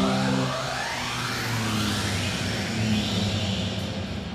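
Recorded jet-engine sound effect played over a PA: several whines rising steadily in pitch over a low steady hum, like an airliner spooling up for take-off.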